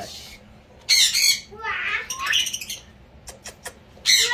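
Pet parrot squawking: a harsh, loud squawk about a second in, then softer chattering, and a few quick clicks near the end.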